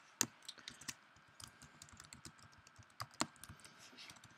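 Computer keyboard typing: a quick, uneven run of quiet keystrokes, with a couple of sharper key hits near the start and about three seconds in.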